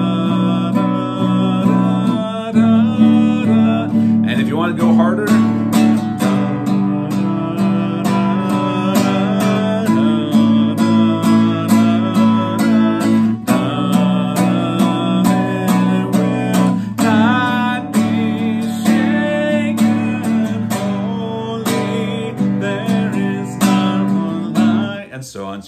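Nylon-string classical guitar strummed in steady, even strokes on each beat, the chords changing every couple of seconds. A man's voice sings the melody softly in places.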